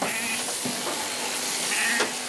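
A sheep bleats briefly near the end, over the steady high hiss of a shearing handpiece crutching it.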